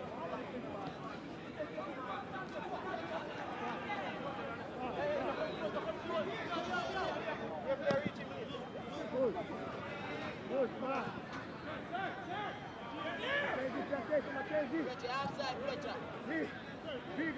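Indistinct voices calling and shouting on and around a football pitch, heard through the pitch-side microphones as a loose babble of separate shouts rather than a roaring crowd. A single sharp knock comes about eight seconds in.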